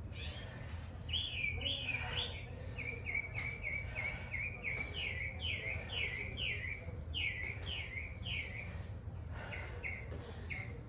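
A songbird chirping, a long run of quick repeated notes at about two to three a second, with a short pause near the end before it starts again.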